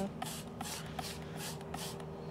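Hand trigger spray bottle spritzing liquid onto leaves: quick repeated squirts, about three a second.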